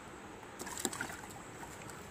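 Faint water splashing with a few light clicks about half a second in, as a small fish is dropped into a plastic tub of water.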